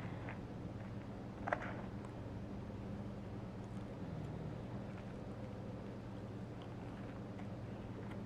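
Quiet room tone with a steady low hum, broken once by a single light click about a second and a half in.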